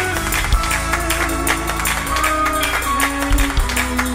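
A live church band plays an up-tempo Pentecostal praise break: fast driving drums with keyboard chords and a steady bass line underneath.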